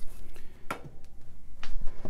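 Two light knocks about a second apart, from a pistol being handled on a tabletop, over a low steady hum.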